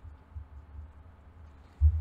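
Low handling rumble as a desk USB microphone is turned over in the hands on a wooden table, with one dull, loud low thump near the end from the microphone or its stand being bumped.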